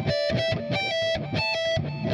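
Electric guitar playing a lead lick slowly: single high notes with pull-offs from the 17th to the 12th fret on the high E string, then the 15th fret on the B string, repeated at about three to four notes a second.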